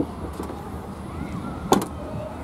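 A dull knock at the start, then near the end a louder, sharp double clunk of the Nissan Qashqai's tailgate being shut and latching.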